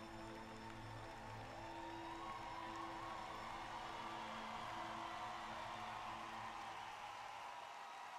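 Slow orchestral program music fading out, while an arena crowd's cheering and applause swells about a second and a half in as the skating program ends.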